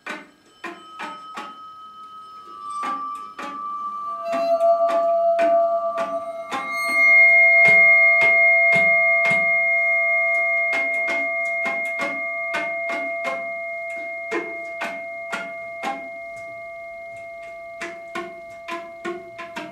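Free-improvised percussion: a quick, steady run of light taps on drums and cymbals. Behind the taps, long steady tones enter one after another in the first seven seconds, swell, then slowly fade away.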